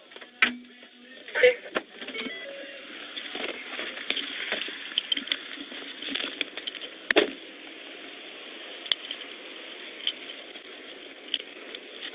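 Steady hiss of a police car's dashcam audio as the cruiser rolls to a stop behind the stopped car, with a few sharp clicks, about half a second in, near a second and a half in, and twice later on.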